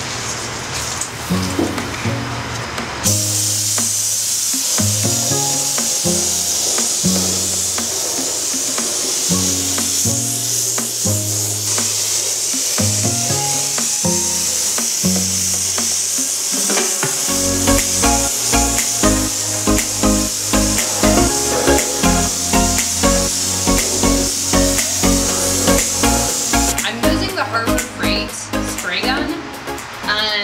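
Background music with a bass line, and beneath it the steady hiss of compressed air from a gravity-feed HVLP spray gun spraying paint, starting about three seconds in and stopping near the end.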